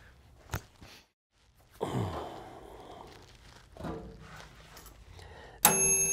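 Handheld electric angle grinder with a cutting disc starting up near the end, a sudden burst of noise with a steady high whine. Before it the shop is fairly quiet, with a short falling sigh-like voice sound about two seconds in.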